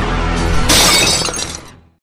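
Intro music with low sustained tones, then a sudden crash sound effect like shattering glass about two-thirds of a second in, which dies away to silence near the end.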